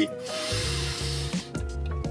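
A deep breath in lasting about a second: a person inhaling to smell a new car's interior. Steady background music plays under it.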